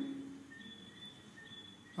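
A pause in amplified speech: the man's voice fades out in the first half second, leaving faint room tone with a thin, high, steady tone that comes and goes.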